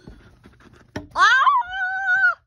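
A child's voice giving a wordless wail that rises sharply about a second in and is then held on one steady pitch. Before it, soft rustling of plush toys handled on carpet and a single knock.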